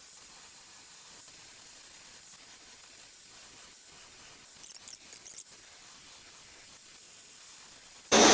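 Hand-held propane torch flame hissing faintly and steadily as it heats the injection molder's metal barrel, expanding it for a shrink fit. A few faint ticks come about halfway through.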